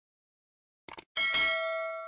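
Subscribe-animation sound effect: a quick double mouse click about a second in, then a bright notification-bell ding that rings on and fades away.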